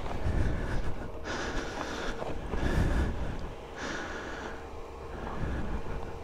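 Wind rumbling on the microphone, with a person's heavy breaths every two to three seconds.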